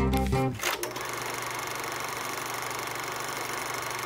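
Background music ends about half a second in. It gives way to a steady, fast mechanical rattle, like a small motor-driven machine running, which fades out at the very end.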